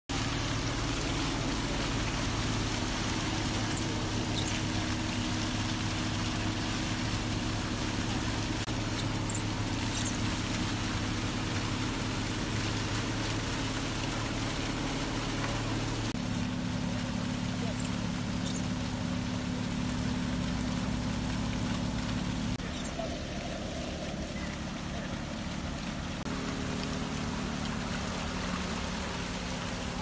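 A crashed car's engine still running at a steady idle while the car sits nose-down in seawater, with water trickling and lapping around it. The hum changes abruptly in pitch and level a couple of times.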